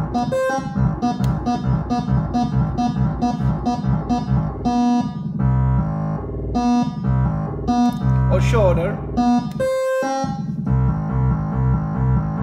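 Eurorack modular synthesizer playing a repeating stepped note pattern of short notes, about three a second, sequenced by a Baby-8 eight-step CV sequencer whose per-step knobs set each note's pitch. Around the middle the pattern changes to longer notes at different pitches.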